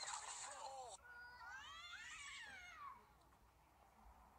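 A cat's long, drawn-out yowl that rises and then falls in pitch, the threatening call of a cat squaring up to another cat. It comes after a short burst of noise and a voice in the first second.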